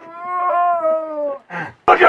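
A person's voice holding one long, high note that falls slightly, for about a second and a half; near the end, loud harsh shouted metal vocals begin.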